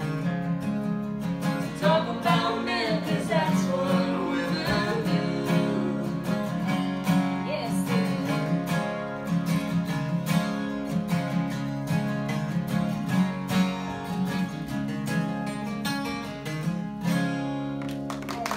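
Two acoustic guitars playing a live country song together, strummed and picked chords.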